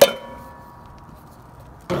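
A metal can is knocked against the rim of a cast iron Dutch oven to shake out the last of the apple pie filling. One sharp metallic clang comes right at the start and rings on, fading over about a second.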